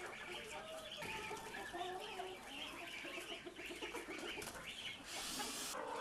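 A flock of chickens clucking, many short calls overlapping. A brief hiss comes in near the end.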